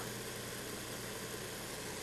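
Steady low hum with a faint even hiss and no distinct events: background room tone.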